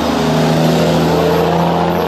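A semi-trailer dump truck's diesel engine passing close by, a loud, steady engine drone.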